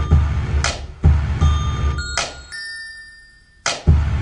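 A programmed hip-hop beat playing back from an online beat maker. It has a heavy pulsing kick-and-bass pattern, a sharp snare-like hit about every second and a half, and bell-like melody notes in the key of D. The low end drops out for about a second near the end, then a hit brings the loop back in.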